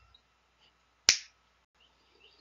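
A single finger snap, sharp and brief, about a second in. It is the cue for the reader to say the word on the screen aloud.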